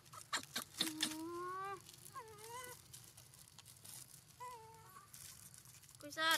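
Young long-tailed macaques giving a few soft, short coos that rise or bend in pitch, with a handful of small clicks and crinkles in the first second.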